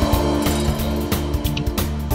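Music starting up: a backing track with a bass line and regular drum beats, with sustained notes that fit an alto saxophone playing over it.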